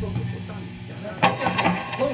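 Guitar and bass amplifiers left humming in the rehearsal room as the band's last note dies away just after the band cuts off, with a few light knocks about a second in.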